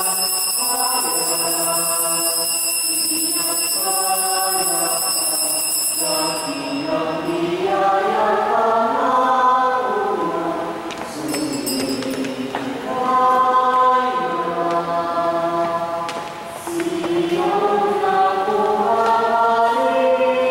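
Church choir singing a hymn in long held notes that rise and fall in pitch, as the priest enters. A steady high whine sounds beneath it and stops about seven seconds in.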